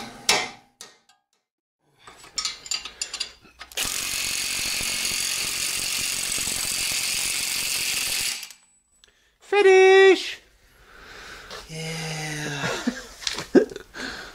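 Cordless impact wrench hammering steadily for about four and a half seconds on the centre bolt of a car's front wheel hub.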